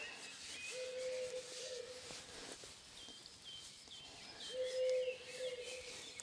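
Small birds chirping faintly, with a run of short, slightly falling chirps in the middle. A low steady hum comes and goes twice.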